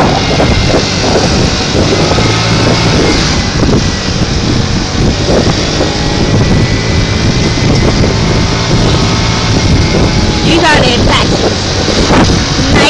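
Wind rushing over the microphone on a moving moped, with the engine running steadily underneath. A voice speaks briefly near the end.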